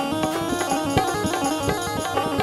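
Live Rajasthani bhajan music from a stage band: an instrumental passage with a melodic lead over regular drum beats.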